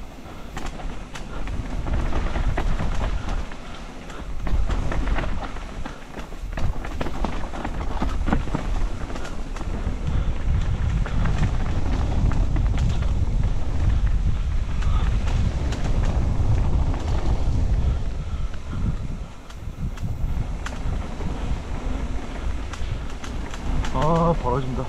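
Mountain bike riding fast down a dirt singletrack: wind rumbling on the camera's microphone, with tyres on dirt and the bike rattling and clicking over bumps. A dip about 19 seconds in suggests a brief slowdown.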